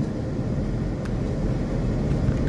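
Steady low rumble of a car heard from inside its cabin on the move: engine and road noise, with one light click about halfway through.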